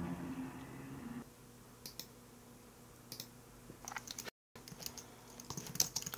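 Faint computer keyboard keystrokes: a few scattered key clicks, then a quicker run of typing near the end as a name is entered.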